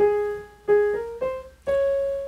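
Grand piano played one note at a time: five single notes in a rising line, the last held and ringing on.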